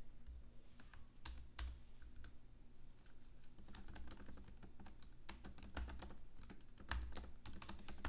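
Typing on a computer keyboard: faint keystrokes, scattered at first and coming in quicker runs in the second half.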